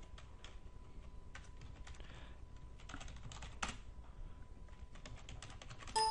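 Faint, irregular clicking of a computer keyboard being typed on, a few key taps per second.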